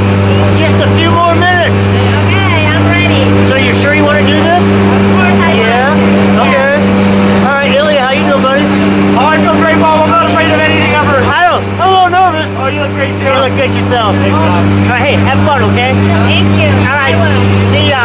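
Aircraft engines droning steadily inside the cabin of a skydiving jump plane, with people's voices raised over the noise.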